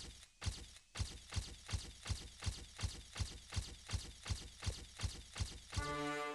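Produced intro sound design: a steady, slightly quickening run of sharp percussive hits, each with a deep thump and a crack, about two and a half a second. Just before the end a held musical tone rises in steps, leading into the theme music.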